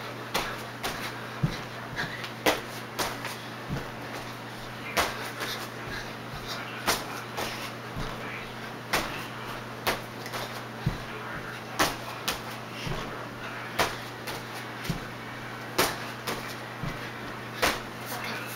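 Feet landing on and around a folding gym mat during a jumping exercise: a sharp thump about once a second, over a steady low hum.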